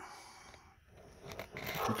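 Faint handling noise: light rustling and a few soft clicks as a hand and screwdriver work up behind the engine toward a wiring plug.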